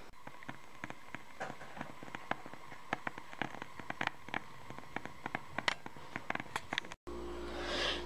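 Wooden-wick candle burning with a quiet, irregular crackle of small clicks, which stops about seven seconds in.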